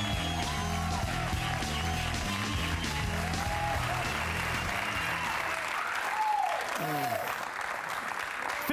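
TV show bumper music with a steady bass line, fading out about five to six seconds in while studio audience applause and cheering rise and take over, with a few whoops.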